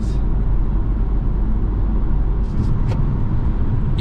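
Steady road and tyre noise inside the cabin of a 2023 Dodge Hornet GT cruising at highway speed on 20-inch wheels with thin tyres. The noise is heaviest at the low end, and a few faint ticks come between two and a half and three seconds in.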